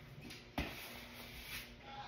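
A single sharp click about half a second in, over quiet room sound, followed by a brief faint low hum.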